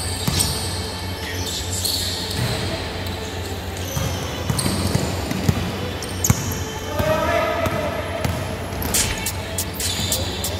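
Basketball bouncing on an indoor gym court during play, sharp bounces scattered throughout with a quicker run of them near the end, ringing in a large reverberant hall.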